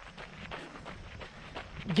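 Running footsteps crunching on a crushed-gravel trail in a steady rhythm, with a low rumble of wind on the microphone.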